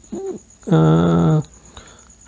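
A man's voice: a short syllable, then a long, steady held vowel lasting under a second.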